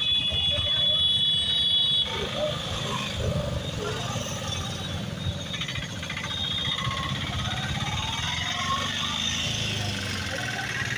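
Auto-rickshaw and motorcycle engines running in slow street traffic, with voices around. A steady high-pitched electronic tone sounds at first and cuts off suddenly about two seconds in.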